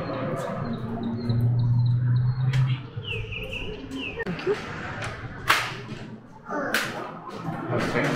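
Outdoor street ambience with birds chirping in short repeated high notes, a low steady hum for about a second and a half early on, and two sharp clacks in the second half.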